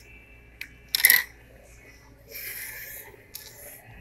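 Handling noise from an iPhone 7 Plus in a rugged OtterBox case: a sharp clack about a second in as it knocks against the desk, then a short rubbing scrape as it slides across the surface, with a light click after it.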